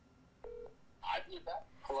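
A single short electronic beep from a smartphone on speakerphone about half a second in, as the call connects, followed by a voice answering through the phone's speaker.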